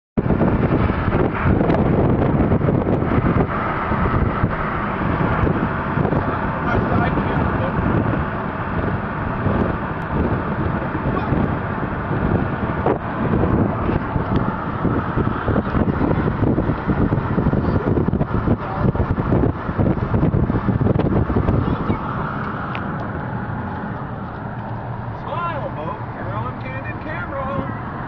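Wind buffeting the phone's microphone, over the road noise of a car driving at highway speed. The noise is loud and steady, easing slightly near the end.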